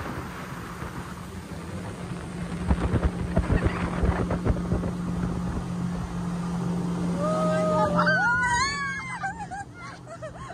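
Small motorboat's engine running steadily at speed, with wind and water rushing past. Near the end, a high, wavering, gliding call of about two seconds rises over it.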